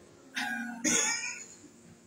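Two short, breathy vocal bursts from a man close to a handheld microphone, the second sharper and louder, then quiet room tone.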